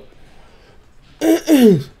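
A man clearing his throat: a short two-part voiced 'ahem' a little past a second in, after a quiet stretch.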